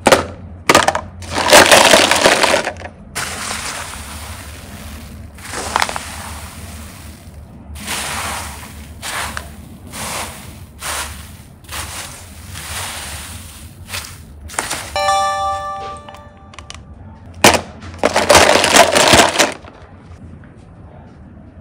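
Hard plastic toy cases clattering in a plastic basket and a hand rustling and crunching through a heap of small foam beads, in a run of noisy bursts. A short ringing tone with several pitches sounds about fifteen seconds in.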